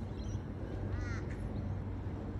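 A bird gives one short call about a second in, with fainter chirps just before it, over a steady low background rumble.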